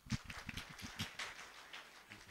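A faint run of irregular clicks and taps, about ten in two seconds.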